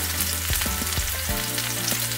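Onion, mini bell peppers and a smoked kielbasa sizzling in olive oil in a cast iron skillet, the onion sautéed nice and soft. A fork stirs through them, giving a few light knocks against the pan. A steady low hum sits underneath.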